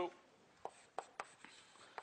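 Chalk writing on a blackboard: about five sharp taps with light scraping as a word is chalked up.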